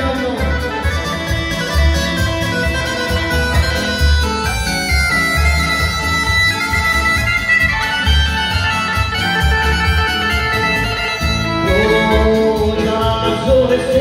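Live band playing kolo dance music in a mostly instrumental passage, with a steady pulsing bass beat under a reedy melody line.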